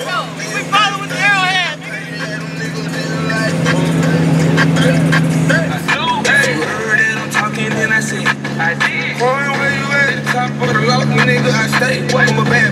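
Boat engine running steadily under way, its pitch shifting about halfway through, with voices and music over it.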